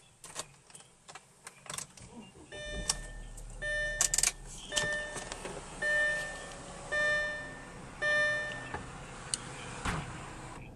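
Keys clicking in the ignition, then a 2006 Audi A4's engine cranks and starts about three seconds in and runs at a raised idle. Over it, a dashboard warning chime sounds about once a second, five or six times, and stops near the end.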